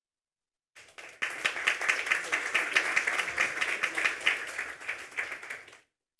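Audience applauding, starting about a second in and dying away just before the end.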